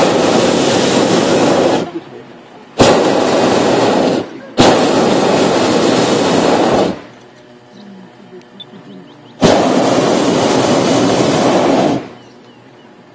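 Hot-air balloon propane burner fired in four blasts of about one and a half to two and a half seconds each, each starting with a sudden roar and cutting off, with short quiet gaps between.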